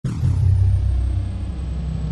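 A deep, steady rumble from a channel-intro sound effect. It starts abruptly, with a faint high tone sliding down during the first half-second.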